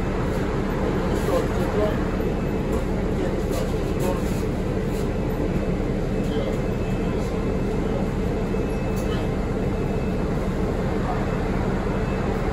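Steady low running hum of a Nova Bus LFS city bus, heard from inside the passenger cabin.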